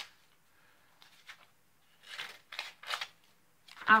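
Scissors cutting paper: about three short snips in the second half.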